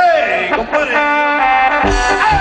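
Live band starting a song: a sustained instrumental note rings out about halfway through, then drums and bass come in near the end.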